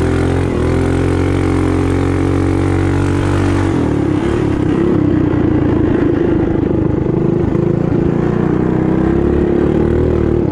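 Built racing mini bike's small engine running hard at high revs with a steady high pitch; about four seconds in the pitch dips briefly, then climbs slowly again.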